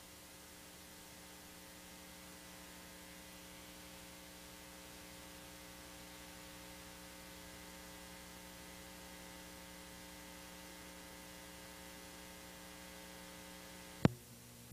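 Faint, steady electrical mains hum with a stack of overtones over a low hiss, unchanging throughout.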